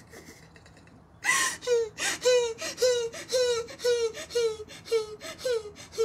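A woman's voice sobbing and wailing in a steady run of short cries, each falling in pitch, about three a second, starting about a second in after a near-quiet moment.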